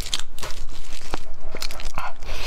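Close-miked eating of stewed pork on the bone: chewing, tearing and biting the meat, with a string of short sharp crackles and clicks.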